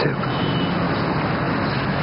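Steady background noise with a low, even hum, unbroken through the pause.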